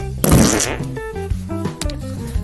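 A comedic fart noise, one rough burst of under a second near the start, over background music.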